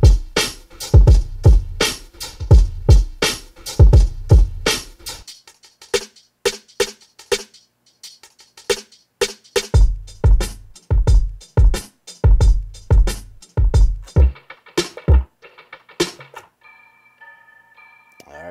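Hip-hop drum loops from a sample pack auditioned one after another on an MPC Live: kick, snare and hi-hat grooves that stop and switch to a new loop every few seconds. Near the end a few short held high tones sound.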